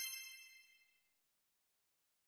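The fading tail of a bright, ringing chime from a logo-intro sound effect; it dies away within about the first half-second, then silence.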